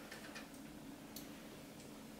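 Quiet room with a faint steady hum and a few light ticks and rustles from hands gathering long hair up behind the head.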